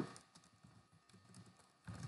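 Faint computer keyboard keystrokes, a few light scattered clicks as a command is typed.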